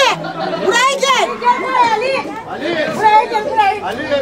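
Several women's voices talking and calling out over one another in lively, overlapping chatter.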